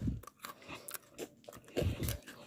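Biting and chewing small biscuit sticks dipped in chocolate cream: a few short, crisp crunches with a louder one near the end.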